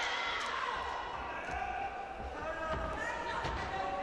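Shouting voices in a boxing hall, with dull low thuds from the ring in the middle.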